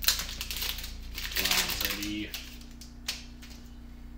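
Foil Pokémon booster-pack wrapper being torn open and crinkled in the hand, with sharp clicks and rustles as the cards are handled; a strong click right at the start and another about three seconds in.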